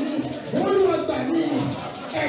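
A congregation singing together, voices holding and sliding between long notes.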